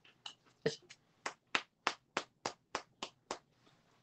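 A crisp, hard-baked waffle being tapped, giving a run of sharp clicks at about three a second after a few irregular ones. The hollow clicking shows how crispy the waffle is.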